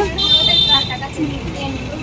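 A single shrill, high-pitched toot, steady in pitch, lasting under a second and stopping about a second in, over low background chatter.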